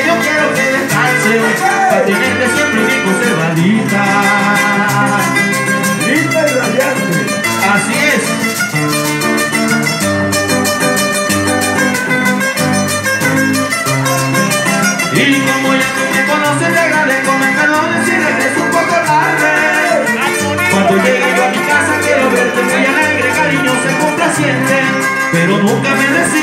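Acoustic guitars playing an instrumental passage of a Colombian paseo: a lead guitar picks the melody over strummed rhythm guitar and a steady line of low bass notes.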